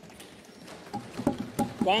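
Members of parliament rapidly thumping their wooden desks in approval, a dense patter of knocks mixed with voices in the chamber; a man's speech resumes near the end.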